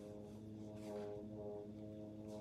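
French horn playing slow, held notes, with a brief break just after a second in.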